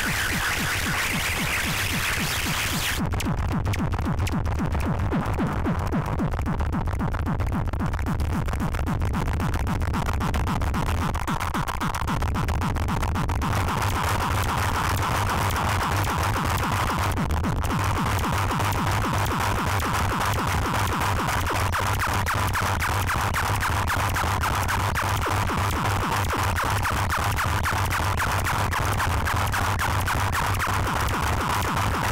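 Live electronic noise from homemade electronic instruments: a rapid pulsing throb over a strong low drone, with a buzzing band in the middle. The high hiss drops away about three seconds in, and the rest runs on as a dense, steady mass.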